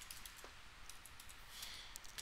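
Faint, scattered clicks of computer keyboard keys being pressed, over a low steady hum.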